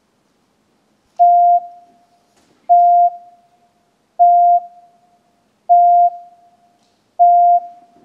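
Five identical electronic beeps, each a steady single mid-pitched tone under half a second long, evenly spaced about a second and a half apart, each trailing off in a short echo. They are a run of same-duration tones forming the consistent context in a beep-duration reproduction task.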